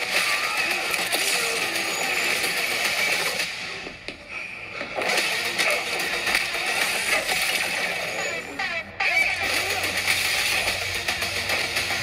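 Film-trailer soundtrack playing from a screen's speakers: music under a fight scene's action sound effects, with short hits, dipping briefly twice.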